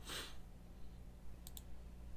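Computer mouse button clicked once, a quick press-and-release pair of ticks about one and a half seconds in, over a steady low electrical hum. A short breathy hiss comes at the very start.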